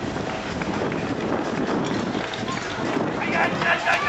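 A firefighting-sport team sprinting off across grass at the start of their run: a steady mix of running footsteps and gear rustle, with voices shouting from about three seconds in.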